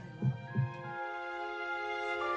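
A heartbeat sound effect: two low thumps close together in the first half second. Behind them, soft background music of long held notes fades in and slowly builds.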